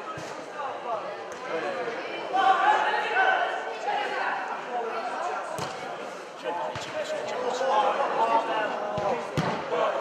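A football being kicked on an indoor artificial-turf pitch: about four sharp knocks in the second half, echoing in the large hall, while players and spectators shout throughout.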